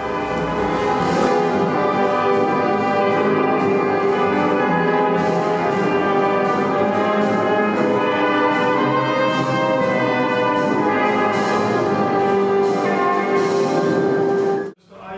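Brass ensemble led by trombone and trumpets playing a slow melody in long held notes.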